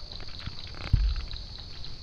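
Swamp ambience: a steady high insect drone, with a short splash of water from a paddle and a low thump against the boat about a second in.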